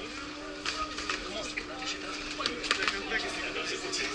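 Indistinct background chatter of people in a large hall over a steady low hum, with several scattered sharp knocks.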